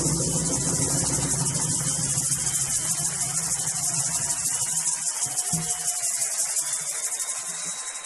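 Crickets chirping in a loud, steady chorus, a fast even pulsing high up. Underneath, a low rumble fades out over the first five seconds or so.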